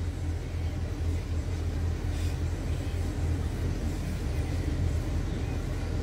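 Steady low rumble of a car heard from inside the cabin.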